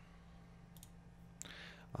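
A couple of faint computer mouse clicks over a low steady hum, with a soft breath near the end.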